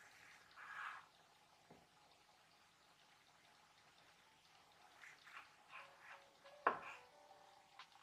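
Kitchen knife slicing ripe figs on a wooden cutting board: a few soft, moist cuts, and one sharp knock of the blade on the board about two-thirds of the way through.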